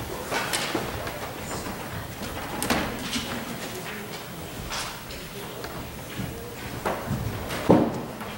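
Scattered knocks, clicks and rustles of people moving and handling hymnals in a large, echoing hall, with faint murmured voices and a louder knock near the end.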